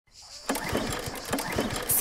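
A small petrol lawn mower engine running with a rapid, regular low beat, starting about half a second in. A man grunts with effort over it.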